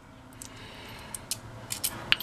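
Small metal screw washers clinking together in a cupped hand, a few light, sharp clicks spread out over the two seconds.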